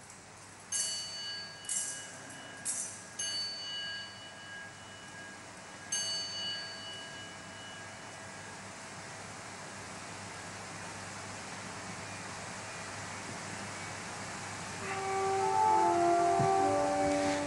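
An altar bell struck five times over the first six seconds, each strike ringing on and fading, marking the elevation of the chalice at the consecration. Sustained musical notes begin near the end.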